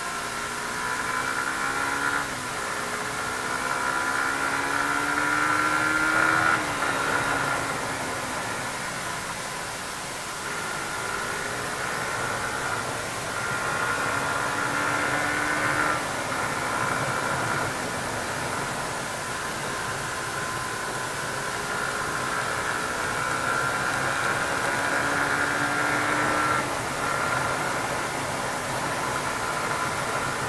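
Suzuki GSX-R150's single-cylinder four-stroke engine heard from on board, its note climbing with the revs and then dropping off sharply four times, over a steady rush of wind noise.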